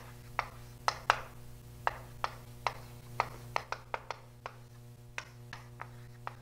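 Irregular sharp taps and clicks of a writing implement striking a writing surface, about fifteen in a few seconds, as a formula is written out. A low steady electrical hum runs underneath.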